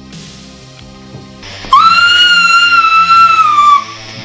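Quiet low background score, then about halfway through a loud, shrill, high-pitched tone that rises in quickly, holds steady for about two seconds and dips slightly before cutting off near the end.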